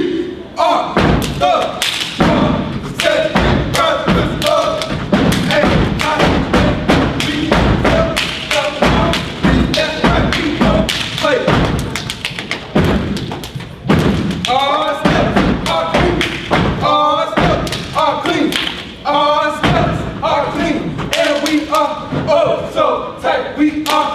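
Fraternity step routine: rhythmic foot stomps and hand claps or body slaps in quick patterns, with voices chanting over them.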